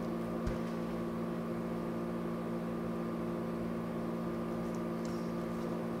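Steady hum of several tones, with a soft low thump about half a second in.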